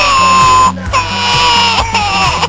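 A girl's loud, high-pitched mock wailing, fake crying in two long held cries, the second starting about a second in.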